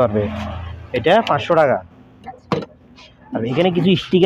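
Small handheld electric air blower's motor whirring, then running down and fading out within about the first second, with a man talking over it. A single click about two and a half seconds in.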